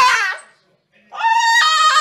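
French bulldog calling out with long, steady-pitched howls. One howl ends about half a second in, and after a short gap a second one begins a little past one second.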